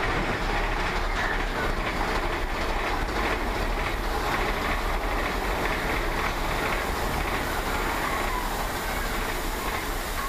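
Big Thunder Mountain Railroad mine-train roller coaster rolling along its track, heard from on board: a steady rumble and rattle of the cars and wheels.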